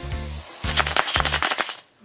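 Green plastic surprise egg shaken in the hand, the metal bead-chain necklace inside rattling in a fast clatter that starts about half a second in and lasts about a second, over steady background music.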